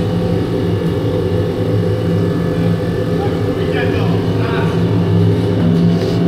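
Industrial oil-fired container washer running, a steady low machine hum from its pump motor and burner.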